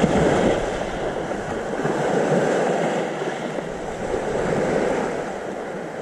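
Sea waves washing onto a gravel shore: a steady rushing noise that swells and fades every two seconds or so.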